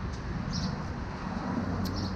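Steady low rumble of outdoor background noise with no distinct event, and a faint click near the end.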